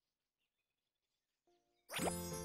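Near silence in a gap between music cues. A faint short note sounds about one and a half seconds in, and a bright music cue starts with a quick upward sweep right at the end.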